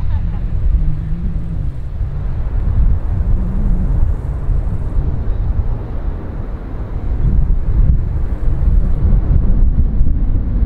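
Deep, steady rumble of a jet airliner's engines on the runway, with wind buffeting the microphone.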